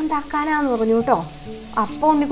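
A woman talking, with faint steady background music underneath.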